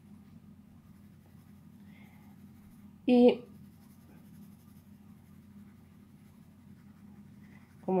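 Graphite pencil shading on paper: faint scratching of short back-and-forth strokes as a drawn ribbon's folds are darkened. About three seconds in, a brief voiced sound from a person cuts in.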